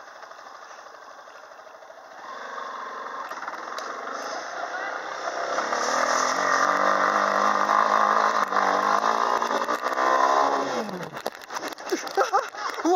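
Yamaha Serow 250's single-cylinder four-stroke engine pulling under throttle on a dirt trail: quiet at first, getting louder about two seconds in and holding a steady drone, then the revs drop away sharply near the end, followed by a few knocks as the bike goes over.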